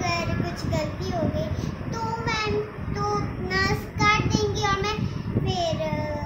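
A young girl singing in a high voice, in short phrases with some held notes and brief breaks between them.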